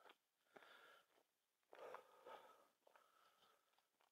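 Near silence, with a few faint breaths from a man walking who is out of breath.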